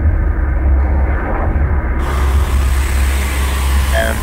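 Loud, dense industrial noise music: a heavy low rumble under a wash of distorted noise, with a bright hiss added about halfway through.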